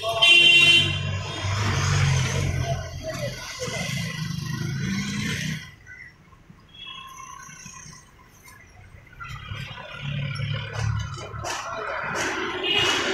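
Street noise with people talking indistinctly: a vehicle horn honks briefly right at the start. The sound drops quieter about six seconds in and picks up again near the end.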